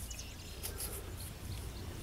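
Quiet outdoor ambience: a steady low rumble of air with faint, scattered bird chirps.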